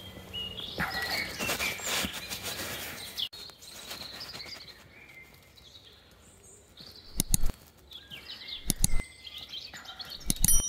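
Birds chirping and singing in woodland at dawn, with rustling from a hand-held camera being carried in the first few seconds. Two heavy handling thumps come near the end.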